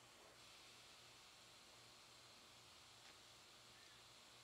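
Near silence: faint steady hiss.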